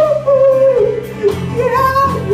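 A live rock band playing, with a high voice singing a wordless, sliding melody over guitar and bass.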